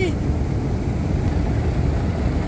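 Automatic car wash at work on the car, heard from inside the cabin: water spray and washing brushes drumming on the body and windshield as a steady low rumble.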